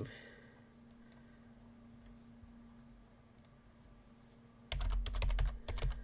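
Quiet room tone with a faint steady hum and a couple of faint clicks, then, near the end, about a second of rapid computer keyboard typing with dull thumps on the desk.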